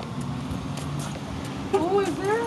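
A car engine running steadily at low speed, with a high-pitched voice starting to speak near the end.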